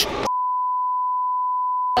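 A steady, pure electronic beep tone edited into the soundtrack, starting about a third of a second in and cutting off abruptly near the end, when talk resumes.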